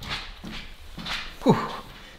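A man breathing out heavily, ending in a breathy "whew" about a second and a half in that falls steeply in pitch.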